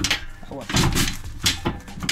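A few knocks and clunks from a van's swivelling seat being turned by hand on its base, the loudest a low thump about a second in.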